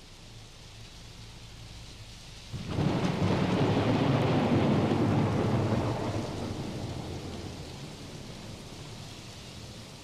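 Faint steady rain, then a sudden loud clap of thunder about three seconds in that rumbles on and slowly dies away.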